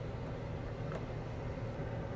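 Combine harvester engine running, heard from inside the cab as a steady low drone, with one faint click about a second in.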